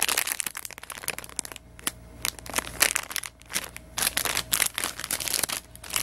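Clear plastic toy packaging crinkling and crackling as it is handled, in irregular, rapid rustles.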